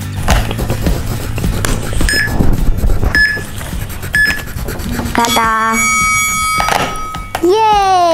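Three short electronic beeps about a second apart, then a longer stepped electronic tone: a countdown timer signalling that the drawing time is up, over fading background music. Near the end a child's voice calls out in a long, rising and falling exclamation.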